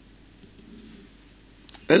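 A few faint clicks of a laptop's keys in a quiet room, then near the end a man starts speaking.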